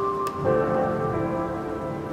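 Lo-fi background music: soft sustained chords, with a chord change about half a second in.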